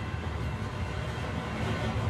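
Steady low vehicle rumble, like city traffic or a passing train, with no distinct events.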